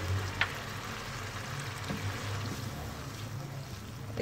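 Fried masala sizzling in a non-stick pan as yogurt is stirred into it with a wooden spatula: a steady hiss over a low hum, with one light tap about half a second in.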